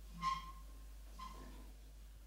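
Two short pitched vocal sounds about a second apart, the first louder, with a faint hall background between them.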